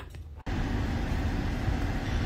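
Steady rumble and hiss of a running car, heard from inside the cabin, starting abruptly about half a second in.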